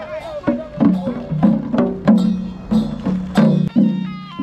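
Hand-beaten barrel drums played in a steady marching rhythm, about three strokes a second, each stroke with a low ringing tone, and a voice heard briefly over them at the start.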